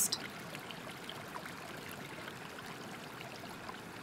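Steady rushing of flowing water, like a stream or small waterfall, even and unbroken.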